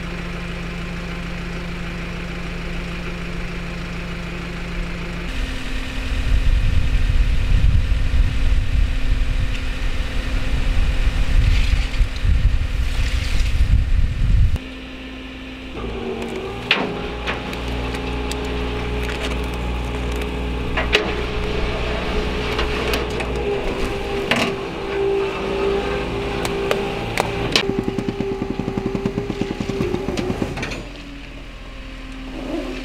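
Flatbed tow truck running, its engine steady at first and then louder and rumbling. After a cut, a steady whine with sharp metallic clicks and clanks comes as the crashed car is winched up the tilted bed, and the clanks quicken into a rapid rattle near the end.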